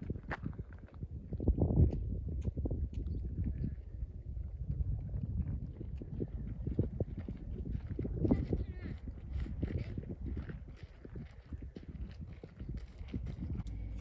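Footsteps crunching irregularly on a dirt and gravel trail, with a low rumble of wind on the microphone and faint voices of people nearby.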